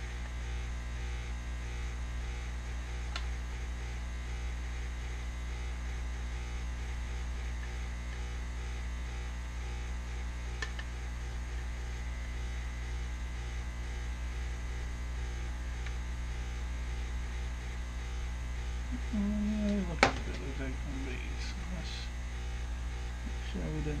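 Steady low electrical hum from the repair bench, with a single sharp click about 20 seconds in and a brief murmur of voice just before it.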